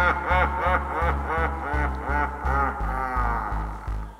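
A man's theatrical, villain-style cackling laugh: a rapid string of 'ha's, each rising and falling in pitch, that slows and stretches out near the end. Under it runs background music with a steady pulsing bass.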